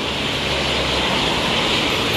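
Steady city-street traffic noise: a continuous rushing hum that swells slightly.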